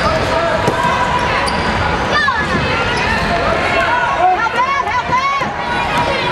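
A basketball bouncing on a hardwood court over the steady chatter of a crowd of spectators, with a few high-pitched sliding calls around the middle.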